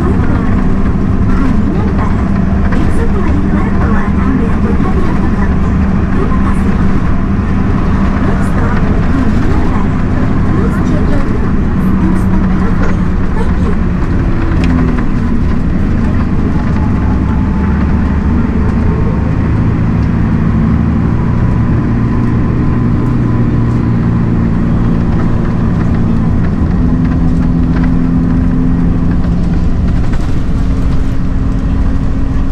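Steady engine drone and road noise inside a moving city bus, its engine note shifting up and down a few times.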